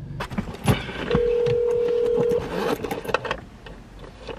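A phone's ringback tone: one steady tone a bit over a second long as an outgoing call rings, with light taps and rustling around it.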